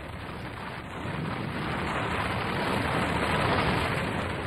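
A rushing, rumbling noise from an experimental cratering explosion heaving up the ground. It swells gradually and is loudest near the end.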